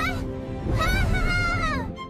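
A cartoon character's wordless, honk-like vocal call, held for about a second and rising then falling in pitch, after a short call at the start. It sounds over background music with a low rumble.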